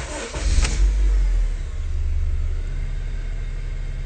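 Car engine starting: a brief crank, then it catches, revs up in the first second or so and settles into a steady idle. The cranking pulled the battery to 9.6 volts, right at the limit, so the battery passes but is suspect.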